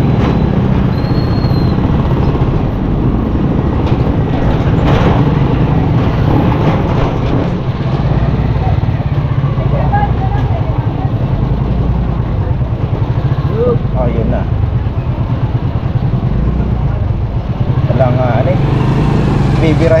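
Motorcycle engine running at low speed, a steady low rumble, with brief voices of people passing in the street now and then.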